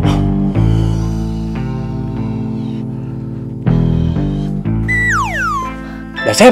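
Comic background music of sustained plucked-string notes over a bass line. Near the end a high whistle-like tone slides steeply downward.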